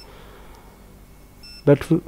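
Two short, high electronic beeps from a UNI-T digital clamp meter, one at the start and one about a second and a half in. They are the meter's key-press tone as its SELECT button is pressed to step between ohm, diode and continuity modes.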